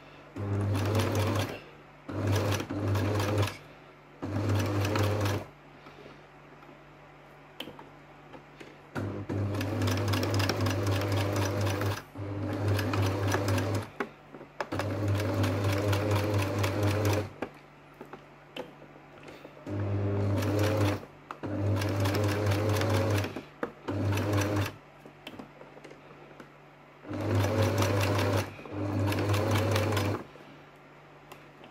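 Electric sewing machine stitching hook-and-eye tape onto fabric in about a dozen stop-start runs, most a second or two long and the longest about three seconds, with short pauses between as the work is guided.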